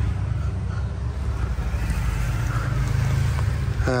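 A steady low rumble of road traffic that eases off near the end.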